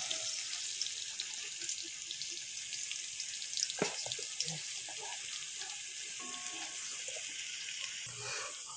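Whole gooseberries sizzling steadily in hot oil in an aluminium pan, a thin even hiss. A light tap of the spoon or spatula on the pan comes a little before four seconds in.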